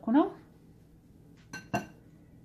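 A metal knife set down against a glass bowl: two quick clinks close together near the end, each with a short ring.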